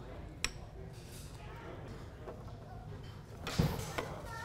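Golf clubs knocking in a store rack as one is handled and pulled out: a sharp click about half a second in and a louder clatter near the end, over a low steady room hum.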